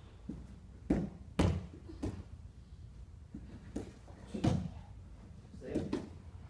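Dull thumps and slaps of bodies and hands hitting a foam grappling mat during a jiu-jitsu roll, a handful of separate knocks with the loudest pair about a second in and another about four and a half seconds in.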